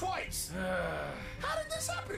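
Wordless voice sounds from the cartoon's characters, exclamations and breaths, with a steady hum underneath.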